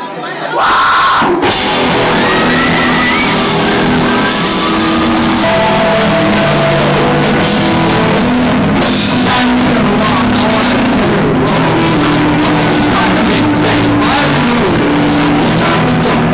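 Live rock band kicking in about a second in and playing loudly and steadily, with a singer's vocals over the amplified instruments.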